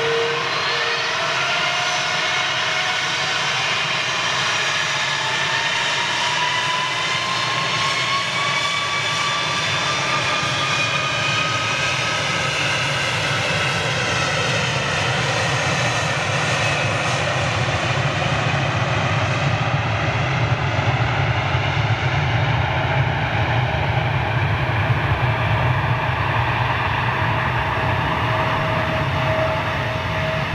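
Airbus A330 twin-jet airliner on its takeoff roll, engines spooling up: a whine that rises in pitch over the first dozen seconds above a steady jet roar, which grows heavier and deeper in the second half.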